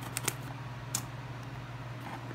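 A few light clicks and taps of small scissors and a cardboard box being handled during unboxing, the sharpest about a second in, over a steady low hum.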